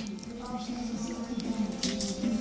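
Television sound playing in the room: background music with some voices.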